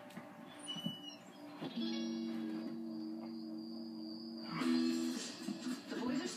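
Guitar music from a television programme, with two notes held steadily from about two seconds in until near five seconds.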